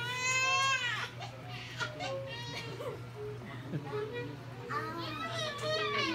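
A child crying: a loud, high, wavering wail in the first second and another cry near the end, with fainter voices between.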